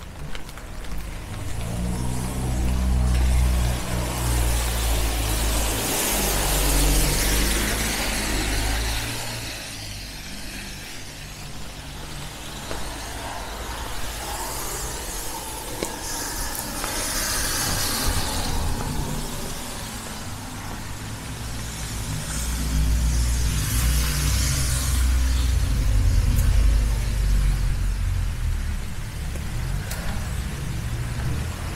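Cars passing on a rain-soaked road: the hiss of wet tyres swells and fades about three times over a low engine rumble.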